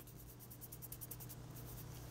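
Fingertip rubbing chrome mirror powder into a cured nail polish surface: faint, quick, scratchy rubbing strokes that die away near the end, over a low steady hum.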